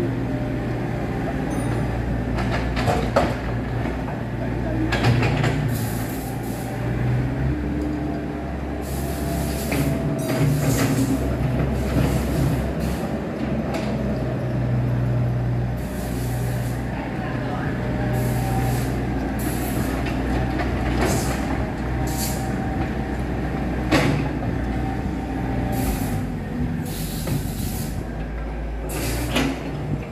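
Doosan DX55 wheeled excavator's diesel engine running steadily under hydraulic load while it loads a small dump truck, with repeated thuds and clatter as soil and broken bricks drop from the bucket into the truck's steel bed.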